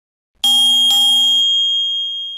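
Bell-chime sound effect for an animated subscribe-button and notification-bell end card: a bright ding about half a second in, a second sharp strike about a second in, then one high tone ringing on and slowly fading.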